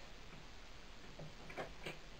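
Scissors snipping sewing threads, a few faint short clicks in the second half.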